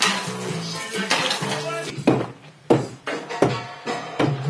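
Background music with sustained notes and sharp percussive hits.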